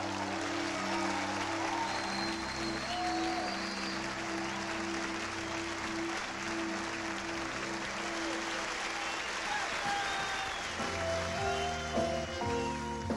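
Audience applause over a held, sustained keyboard chord as the band's song ends. Near the end a new piece of music starts, and the applause fades under it.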